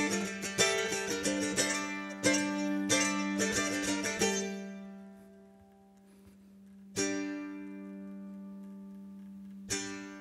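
Solo F-style mandolin: a run of quickly picked notes over a low note left ringing, slowing and fading out about four seconds in. Then two single struck notes ring out, one about seven seconds in and one near the end.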